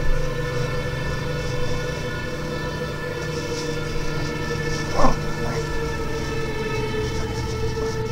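A steady droning chord of several held tones. About five seconds in, a short rising squeal cuts across it.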